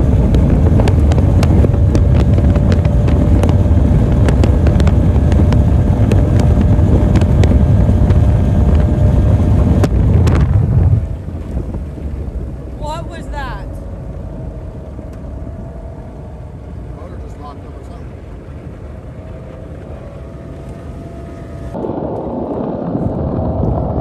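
Outboard race-boat engine running flat out at about 85 mph, with heavy wind buffeting the microphone. About eleven seconds in the engine cuts out suddenly, leaving quieter wind and water as the boat coasts to a stop. The shutdown came from the engine wiring harness vibrating loose under the cowling.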